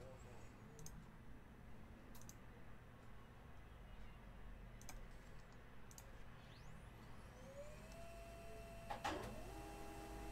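A few faint computer-mouse clicks, then a Samsung M2020 laser printer starting up about seven seconds in: a rising whine that settles into several steady tones, with a clack near the end as the print job begins.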